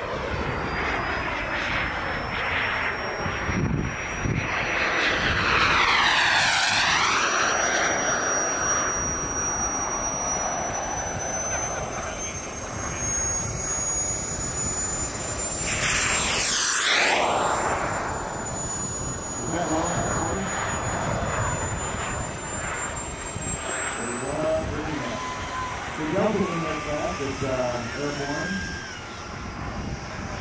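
Turbine engine of a Jet Legend F-16 radio-controlled model jet in flight: a high whine that shifts in pitch, with two passes, about six and sixteen seconds in.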